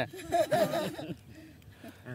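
Short speech and laughter from a woman in about the first second, then only faint background.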